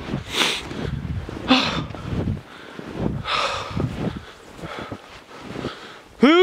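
Heavy, laboured breathing of a person hiking through deep snow, with three loud breaths in the span of about three seconds.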